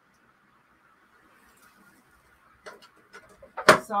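Near silence, then a few light knocks from items being handled on a scale, and one sharp knock, the loudest sound, just before a woman says "sorry".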